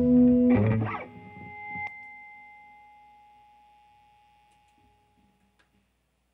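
Electric guitar through effects holding a wavering note, then a last short chord about half a second in as the song ends. A sharp click comes near two seconds, and a high ringing tone slowly fades out.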